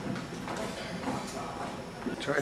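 Indistinct background voices of people talking, faint and steady, with no single voice standing out.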